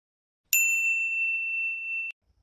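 A single edited-in ding sound effect: a bright bell-like tone struck about half a second in, ringing on with little fade and stopping abruptly near the end.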